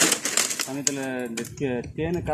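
A man talking, with a rapid run of sharp clicks over the voice in the first second and a half.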